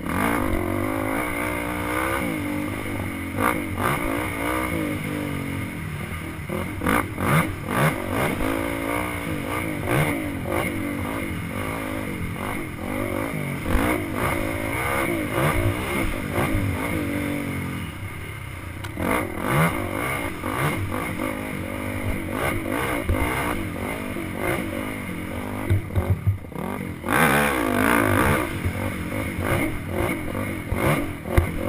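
Dirt bike engine revving up and down over and over as it is ridden over rough, rutted trail, with clatter and knocks from the bike over the bumps. It heard from a helmet-mounted camera. The engine eases off briefly a little past halfway, then pulls hard again.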